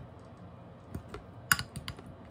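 A utensil clicking against a glass food container while mashing avocado and mixing: a few irregular sharp clicks, the loudest about halfway through.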